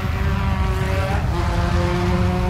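Cartoon whirring sound effect: a steady, motor-like rumble with a hum above it, for a figure spinning like a wheel at high speed.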